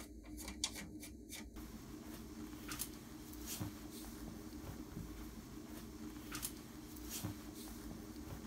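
Faint handling noises: a few small clicks in the first second and a half as a plastic embroidery frame is fitted on the machine's arm, then sparse clicks and fabric rustling as a polo shirt is picked up, over a low steady hum.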